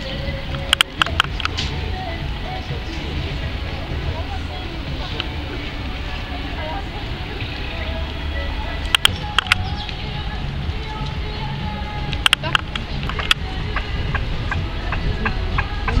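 Steady low background rumble with faint distant voices, broken by a few short clusters of sharp clicks about a second in, around nine seconds, and again around twelve to thirteen seconds.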